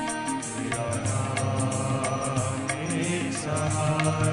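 Live bhajan music: held harmonium and synthesizer notes over a tabla and octopad beat.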